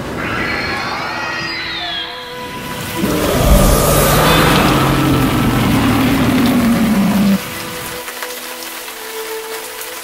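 Storm sound effects, rain with a rumble of thunder, mixed with background music. A loud swell with a deep rumble comes in about three seconds in and drops away suddenly at about seven seconds, leaving quieter held music notes.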